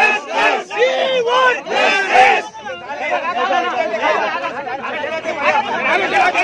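A crowd shouting and arguing in a scuffle, many voices talking over one another. The shouting is loudest in the first couple of seconds, then settles into a dense babble.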